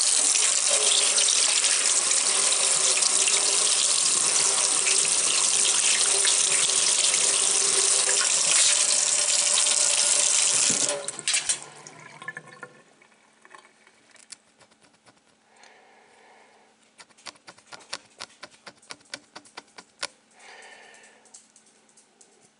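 Tap water running into a stainless steel sink to rinse the marking ink off a freshly laser-etched stainless part. It runs steadily for about eleven seconds, then is shut off, leaving faint scattered ticks.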